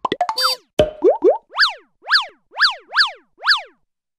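Cartoon-style sound effects for an animated logo: a quick run of clicks and pops with short rising glides, then five quick chirps, about two a second, each swooping up in pitch and back down.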